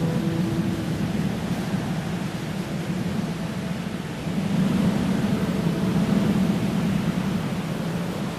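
A song's closing noise outro: the last held notes die away in the first second, leaving a steady hiss-like wash over a low rumble that thins out a few seconds in and swells again about halfway through.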